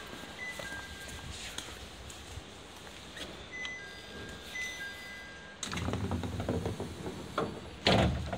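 A two-tone electronic chime, a higher note followed by a lower one, sounds twice in the first half. From about five and a half seconds in there is a low rumble with knocks, and a sharp knock comes just before the end.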